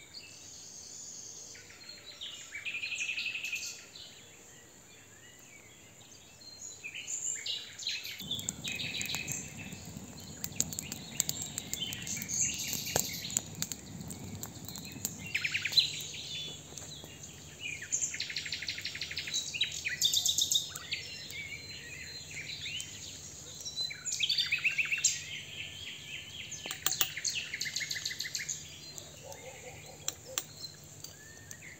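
Wild songbirds singing and calling, a busy run of short chirps and trills coming and going. From about eight seconds in, a low rushing noise runs beneath them.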